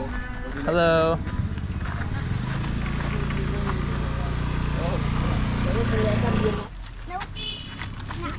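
A motor scooter's engine running as it rides toward and past, a steady low hum from about two seconds in that cuts off suddenly near seven seconds. A brief, loud pitched tone sounds about a second in.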